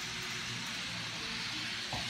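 N gauge model trains running on the track: a faint steady motor hum under a hiss.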